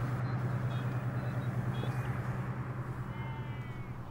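A steady low hum under a background hiss, with a few faint, thin high-pitched calls, one a little longer about three seconds in.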